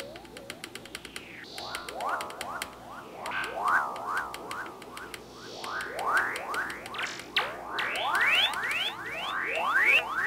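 Stylophone Gen X-1 synthesizer played through effects pedals, making a run of pitch swoops: arching rise-and-fall sweeps at first, then fast upward glides about three a second that grow louder near the end. A fast ticking sits over the sound in the first few seconds.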